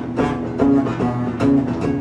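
Acoustic guitar strumming chords in a steady rhythm, with no singing, as an instrumental fill in a country-style song.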